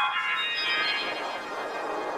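Windows-style startup jingle put through a 'G Major' audio effect: a sustained, organ-like synth chord that begins suddenly and holds, slowly fading.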